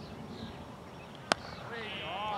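Cricket bat hitting a cricket ball once, a single sharp crack. A voice starts calling out near the end.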